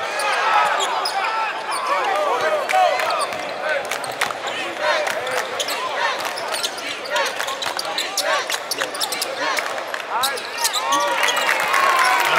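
Basketball being dribbled on a hardwood court, with many short sneaker squeaks and scattered voices from players and spectators.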